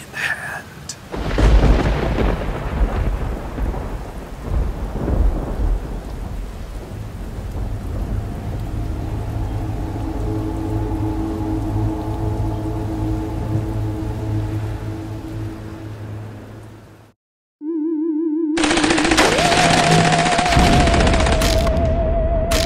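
Thunderstorm sound effect. A loud thunder crash about a second in rolls and fades into steady rain, with low droning tones underneath. Near the end the sound cuts out for a moment, then a wavering, warbling tone plays over loud hiss.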